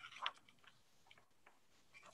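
Near silence over an open call, with a few faint clicks; the clearest comes just after the start.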